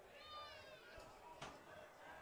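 Near silence: faint field ambience with a distant voice calling out in the first second and a faint click about a second and a half in.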